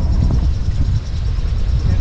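Wind buffeting the microphone on a yacht's deck: a loud, uneven low rumble that rises and falls.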